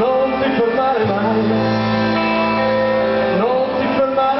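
Live rock band playing on stage: electric guitars, bass and drums, with a male singer singing into the microphone.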